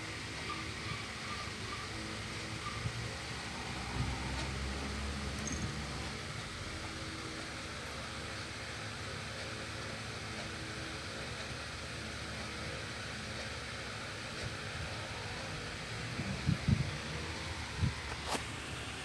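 Steady low background hum and hiss, like a room fan or air conditioner, with a few soft bumps from the phone being handled near the end.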